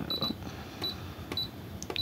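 Brother sewing machine's touch-panel keys beeping as the stitch setting is changed to a straight stitch: a quick run of short high beeps at the start, then single beeps about every half second.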